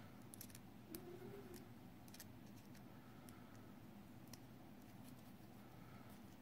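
Near silence with a few faint, scattered clicks: small securing screws being done up in a 3D printer hot end's aluminium heater block.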